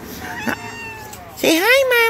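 A house cat meowing: one loud, drawn-out meow that rises and then falls in pitch, starting about one and a half seconds in.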